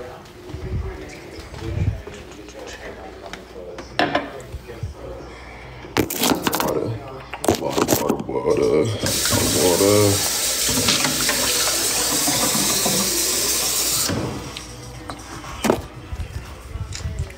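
Water running from a kitchen tap for about five seconds, starting about nine seconds in and cutting off abruptly. It follows a few clatters and knocks of things being handled at the counter.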